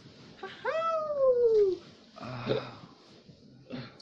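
A single drawn-out meow, rising sharply and then sliding down in pitch for about a second, followed by a short, lower voice sound.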